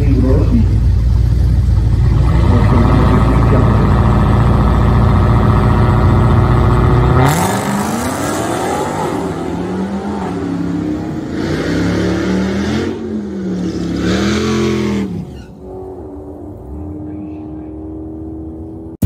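A Dodge Challenger's Hemi V8 drag car runs loudly at the starting line, then launches hard. The engine note climbs and drops with each upshift as the car pulls away down the quarter mile, fading over the last few seconds.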